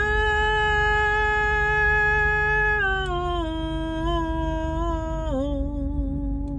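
A woman's voice singing one long drawn-out note, held steady for nearly three seconds, then stepping down in pitch twice, with a slight wobble on the lower notes.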